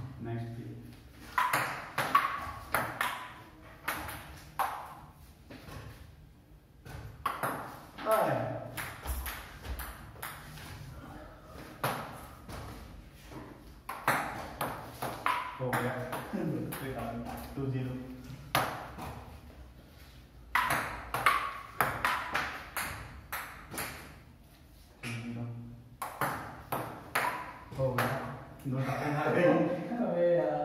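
Table tennis rallies: the ball clicks back and forth off the paddles and the wooden tabletop in several runs of quick hits, with short pauses between points.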